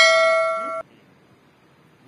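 A loud metallic, bell-like ring with several clear tones, already sounding at the start, fading slightly and then cut off abruptly under a second in.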